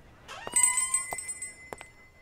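A small shop-door bell rings as a door opens, a short rising squeak and then a ringing that fades over about a second and a half, with a few light clicks.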